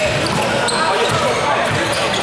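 Basketball game sound in a gym: players and spectators calling out and talking over one another, with a basketball bouncing on the hardwood court, all echoing in the large hall.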